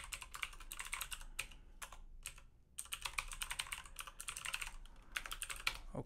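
Rapid typing on a computer keyboard, fast runs of keystrokes with a short pause about two seconds in before the typing resumes.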